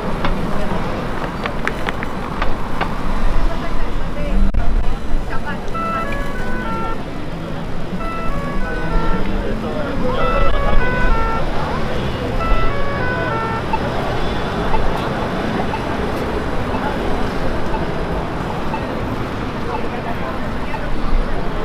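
Busy downtown intersection: traffic noise and crowd chatter, with a short melody of high notes played in repeated phrases from about six seconds in until about fourteen seconds.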